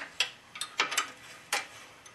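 Ratchet wrench clicking as the nut on a BMW F650 rear suspension link bolt is tightened down: about five sharp, irregularly spaced metallic clicks.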